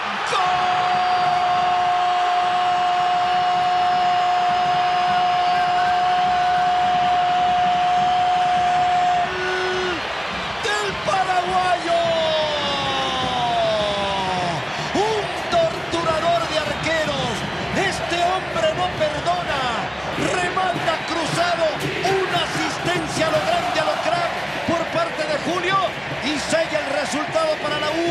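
Football commentator's long goal cry, "¡Gol!", held on one note for about nine seconds. After it come excited voices and stadium crowd noise.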